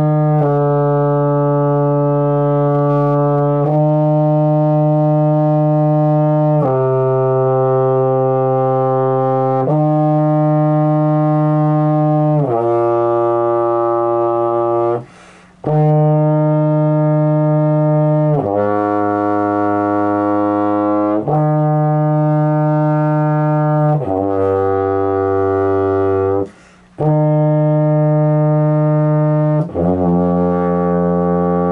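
Baritone horn playing long tones in E-flat: slow held notes of about three seconds each, stepping down the scale, with two short breaks for breath, one halfway through and one near the end.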